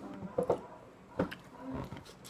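A few soft mouth clicks and lip smacks as a hard candy is taken into the mouth and tasted, with a short hummed 'mm' near the end.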